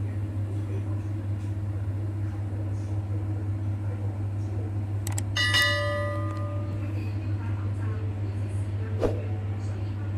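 A click, then a bright bell ding that rings and fades over about a second, about five seconds in: the sound effect of an on-screen subscribe-button and notification-bell animation. Under it runs a steady low hum, with a short knock near the end.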